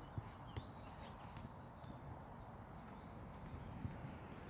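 A football being dribbled through markers on artificial turf: light thuds of the ball touched by foot among quick running steps, with two sharper touches in the first second.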